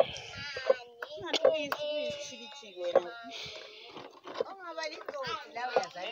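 People talking, a child's voice among them, over a wooden pestle pounding soft monkey-orange (umgwadi) pulp in a wooden mortar, with a few dull thuds.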